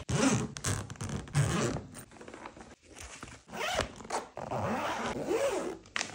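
Zipper of a hard-shell suitcase being unzipped around the case in two long pulls, with a short pause about two seconds in.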